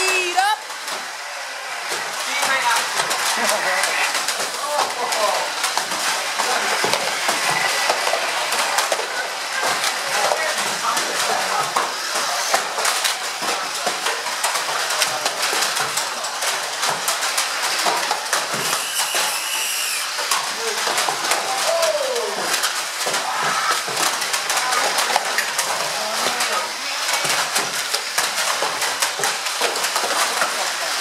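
Many small electric RC banger cars running on a carpet track, with frequent clicks and knocks as they hit each other and the barriers. Indistinct chatter from people in the room runs underneath.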